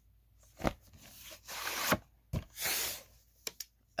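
A VHS cassette being slid out of its cardboard sleeve: a sharp click, a scraping rustle of cardboard against plastic, another click and a shorter rustle, then a few small ticks near the end.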